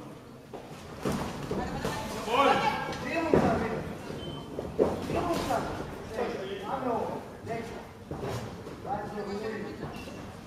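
Men's voices shouting in a large sports hall echo around a boxing bout, mixed with a few sharp thuds of punches landing on gloves and headguards.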